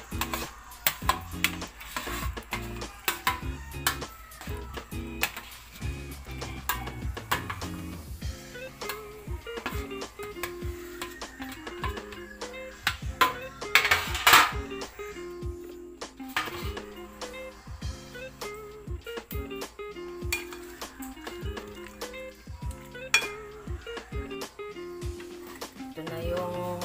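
Background music, over clinks and knocks of a plastic scoop against a stainless steel tray and glass bowl as gelatin cubes are scooped, with a louder scrape about 14 seconds in.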